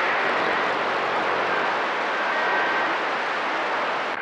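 Steady hiss and static from a CB radio receiver on channel 28 (27.285 MHz) during skip conditions, with no readable voice. A faint thin tone comes through briefly about two seconds in.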